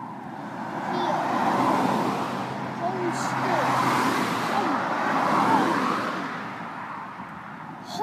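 A car driving past on the road, its tyre and engine noise swelling over a few seconds and then fading, with short chirp-like glides heard over it.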